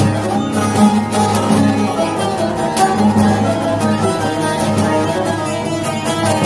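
Two bağlamas, a long-necked one and a short-necked one, playing an instrumental interlude of a Turkish folk song (türkü) with quick plectrum strokes.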